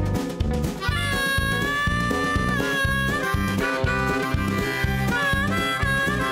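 Live country-rock band playing an instrumental break: a harmonica solo of long held notes that bend, over drums, bass and electric guitars. The harmonica comes in about a second in.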